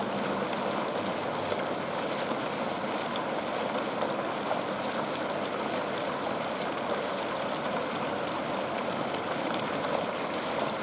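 Steady, even rushing noise like running or splashing water, with no clear pitch and no change throughout.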